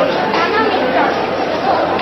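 Crowd chatter in a large hall: many voices talking over one another at a steady level.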